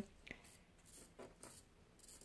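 Near silence, with faint rustles of a paper sewing pattern being handled on lace fabric and a light click about a third of a second in.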